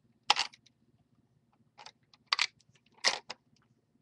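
Plastic clacks and rattles from a hand-worked LEGO gumball machine as it lets out a gumball: four sharp clatters spread over about three seconds.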